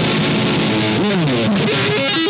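Electric guitar solo: a held chord, then about a second in a note bends sharply up and slides back down.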